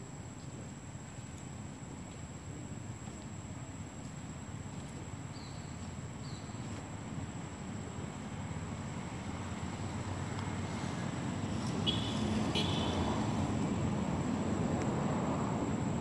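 A low rumble that grows gradually louder, under a thin steady high whine, with a few brief high chirps in the first half and a short high-pitched call about twelve seconds in.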